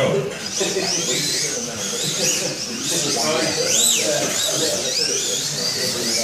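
Electric slot cars' small motors whining, the pitch rising and falling again and again as the cars speed up and slow down around the track.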